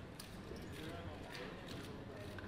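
Plastic casino chips clicking against each other in short irregular clacks as a croupier sorts and stacks them on a roulette table, over a murmur of voices in the room.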